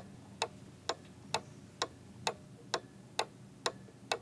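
Steady, evenly spaced ticking, about two ticks a second, like a clock.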